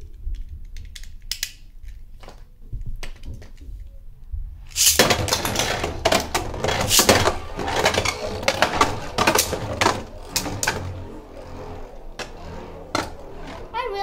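Two Beyblade spinning tops launched into a plastic Beyblade Burst stadium about five seconds in: a sudden, loud rattling of the tops spinning and clashing against each other and the stadium walls, full of sharp clicking hits, thinning out after about ten seconds. Before the launch, only a few scattered light clicks.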